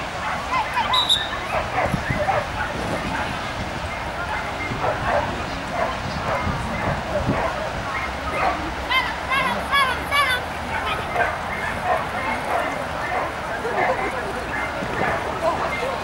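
Dog barking repeatedly in short, high yips, with a quick run of about three barks a second around nine to ten seconds in.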